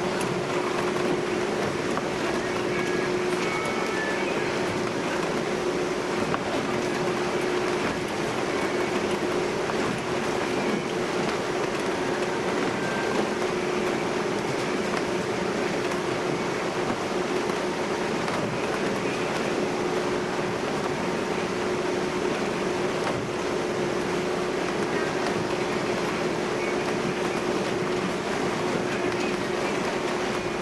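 Steady engine and hull noise of a high-speed passenger ferry under way, heard inside its passenger cabin, with one constant humming tone running under an even rushing noise.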